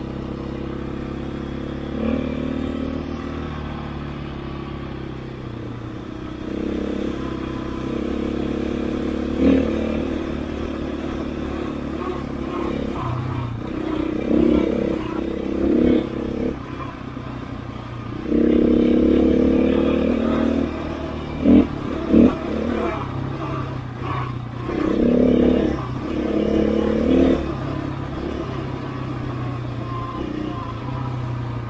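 KTM 500 EXC single-cylinder four-stroke enduro bike being ridden, its engine running with repeated surges of throttle every few seconds and pitch steps between them. Two short, sharp loud bursts come a little past the two-thirds mark.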